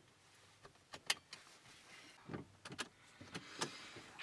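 Faint scattered clicks and rustles of people shifting about inside a car cabin, with one sharper click about a second in.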